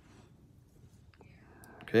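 Near-quiet room with a faint click a little over a second in, then a soft breath and a man saying "okay" at the end.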